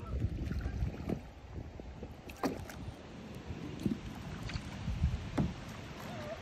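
Kayak paddling on a river: paddle blades dipping and splashing, with short splashes and drips every second or so over a low wind rumble on the microphone.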